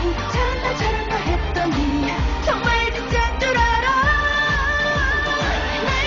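Korean pop dance song with a woman's lead vocal over a steady kick-drum beat about twice a second, with long held notes in the second half.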